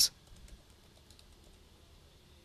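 A few faint computer keyboard key taps, mostly in the first second, as code is typed into an editor.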